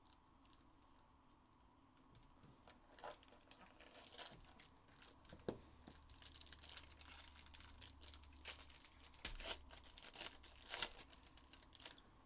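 Foil wrapper of a trading-card pack crinkling and tearing as it is opened by hand, faint. Quiet at first, then irregular crackles from about three seconds in, a few sharper ones near the end.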